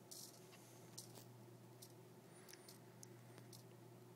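Very faint, irregular small clicks from a little hobby servo stepping its arm round, over a low steady hum; otherwise near silence.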